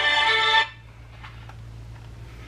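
A mobile phone ringtone playing a steady musical tone, cut off suddenly about two-thirds of a second in when the call is picked up, leaving a faint low hum.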